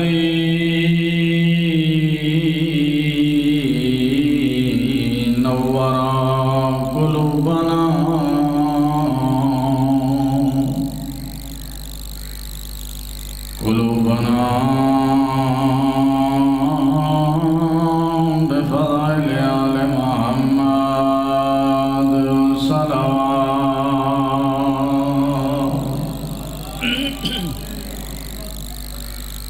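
A man chanting an Arabic religious recitation in long, slow melodic phrases, with held notes that glide gently in pitch. The chant breaks off for a few seconds near the middle and again near the end.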